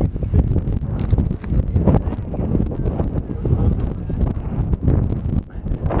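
Wind rumbling on the camera microphone, with irregular knocks and scuffs of footsteps and camera handling on rocky ground.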